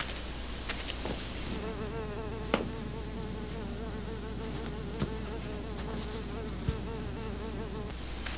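An insect buzzing with a wavering pitch, starting about a second and a half in, over a steady hiss, with a few sharp clicks.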